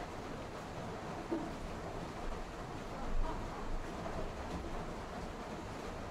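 Egg curry simmering in a metal kadai on a gas stove: a steady low hiss of cooking, with two brief louder sounds, about a second in and again a little after three seconds.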